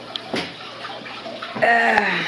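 Aquarium filter water running steadily with a trickling, splashing sound, with a brief voice sound near the end.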